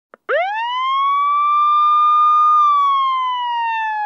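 A single siren wail: after a brief click, the pitch rises quickly about a quarter second in, holds high for about two seconds, then slowly falls.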